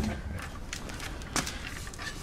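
A few light knocks and clicks from handling the chair's wooden leg base and its metal swivel mechanism, with one sharper knock about one and a half seconds in.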